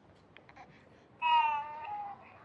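A baby's single high-pitched coo from a phone video, starting about a second in and lasting under a second, falling slightly in pitch.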